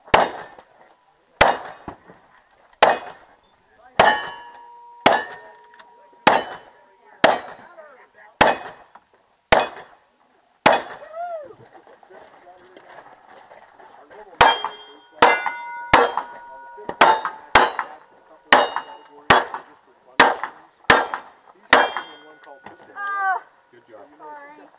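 A string of about ten single-action revolver shots about a second apart, many followed by the ring of hit steel targets. After a pause of about three seconds comes a faster string of about ten more shots, again with steel ringing.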